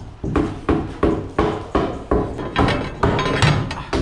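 Steady hammering: a hand hammer striking at about three blows a second, each blow a sharp knock with a short ring.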